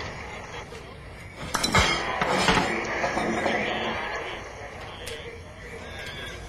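A few glass clinks and knocks about a second and a half in, followed by a louder stretch of noise lasting about two seconds.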